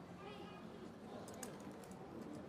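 Low-level pause: a faint voice in the first half, then a few faint clicks about a second and a half in.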